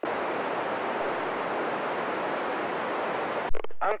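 Amateur FM radio receiver hiss: steady static that starts abruptly when the ISS station's transmission ends and the receiver is left on an empty channel. A thump near the end cuts it off, and a voice starts.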